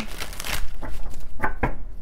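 An oracle-card deck being handled in its cardboard box: a rustling scrape of card and cardboard for about half a second, then a few light taps.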